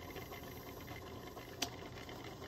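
Steady low background noise in a lab with a magnetic stirrer running, and one sharp click about one and a half seconds in.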